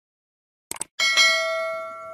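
Subscribe-button animation sound effect: a quick double mouse click, then a bright notification-bell ding that rings on and slowly fades.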